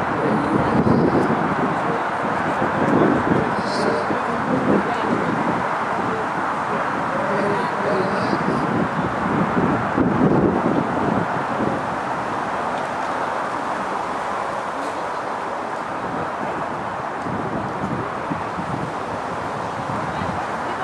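Steady outdoor background noise with indistinct voices of people talking.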